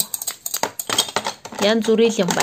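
Plastic toy medical instruments clicking and clattering against each other and the plastic box as a hand rummages through them, in a quick run of light knocks. Near the end a short wavering voice sound is heard.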